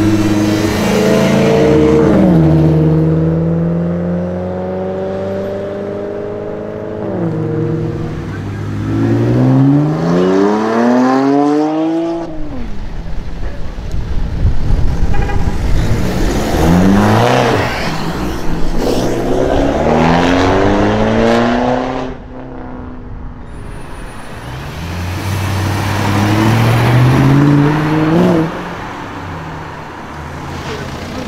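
BMW E92 coupés accelerating hard in several clips one after another: the engine note climbs with the revs and drops at each gear change or lift-off. A rising rev near the end cuts off sharply.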